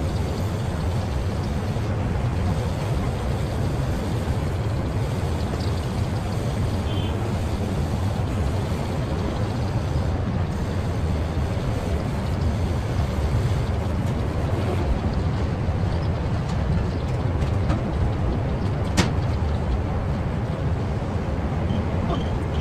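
Steady low outdoor rumble with no clear pitch. A single sharp click comes a few seconds before the end.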